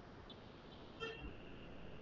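Quiet background hiss, with a faint, brief, high-pitched tone about a second in.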